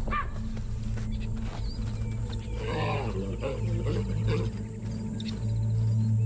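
Baboon alarm barks: a short call at the very start, then a louder run of calls about three seconds in, over a steady low music drone. The barks signal that a predator has been spotted.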